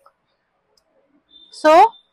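Near silence for about a second and a half, then a woman's voice briefly says one word, with a faint thin high whistle-like tone under it.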